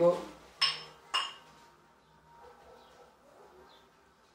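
Two sharp metallic clinks about half a second apart, from a pair of plate-loaded dumbbells held together and knocking against each other as they are moved.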